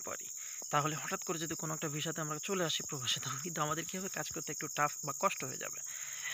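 A man talking over a steady, high-pitched drone of insects that never lets up.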